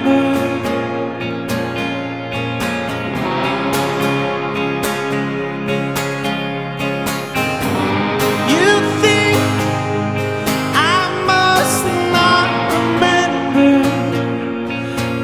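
Live indie-rock band music: electric guitars and a strummed acoustic guitar, with a man singing over them.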